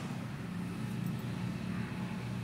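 A steady low hum from a running motor or engine.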